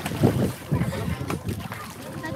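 Water splashing from swimmers kicking at the surface, with wind buffeting the microphone, and faint voices.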